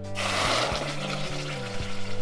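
Tomato sauce poured into a hot stainless steel pan, sizzling and bubbling on contact with the hot metal; the hiss starts suddenly just after the start and slowly dies down.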